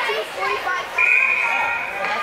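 Spectators' chatter and children's voices echoing in an ice rink, cut through halfway by a single steady high whistle blast about a second long, typical of a hockey referee's whistle stopping play.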